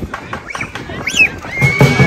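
Lion dance drum-and-cymbal accompaniment in a brief lull: a few scattered taps and a high squeal that rises and falls about a second in, then the drum and cymbals strike up their steady beat again near the end.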